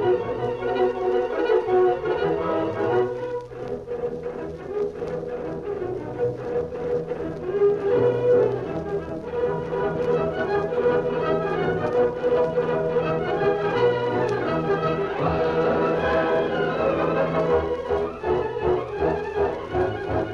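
Orchestral music with strings and brass playing at a steady, full level.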